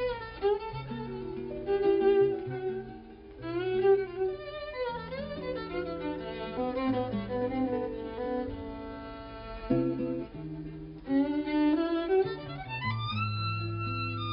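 Jazz violin played with the bow, a fast melodic line full of sliding notes and vibrato, over double bass and guitar accompaniment.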